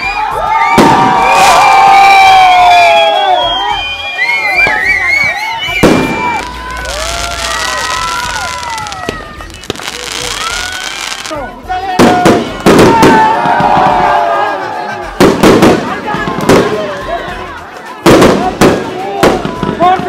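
Fireworks going off: a hissing stretch in the middle, then a run of sharp bangs through the last several seconds, with a crowd of people shouting and talking over them.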